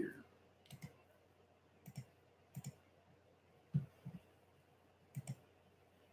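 Faint, scattered clicks, about seven over a few seconds, some in quick pairs.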